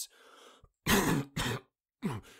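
A man coughing and clearing his throat in two rough bursts after a faint breath, acted as a character in pain who is about to die.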